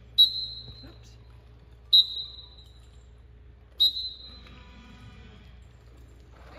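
Three short, shrill whistle blasts, evenly spaced about two seconds apart, each ringing on briefly in the indoor arena.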